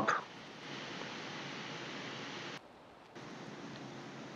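Faint steady background hiss of the recording, broken by a brief dropout lasting about half a second just before three seconds in.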